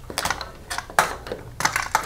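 Irregular light metallic clicks and taps as a bolt and large washer are fitted to a steel brake pedal and master cylinder bracket on the motorcycle frame, the sharpest about a second in.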